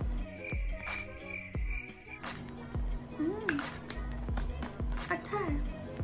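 Background music with a regular bass beat; a held high tone runs through the first two seconds.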